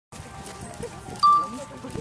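A single bright ringing tone about a second in, starting sharply and dying away within half a second, over a background of murmured voices.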